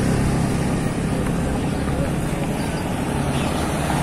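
Steady low rumble of a vehicle engine running.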